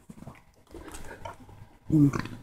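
Faint handling of a plastic 6x6 puzzle cube as it is lifted off the table, then near the end a short, loud burp.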